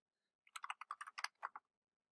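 Faint, quick run of computer keyboard keystrokes, starting about half a second in and stopping near the middle, as a word is typed.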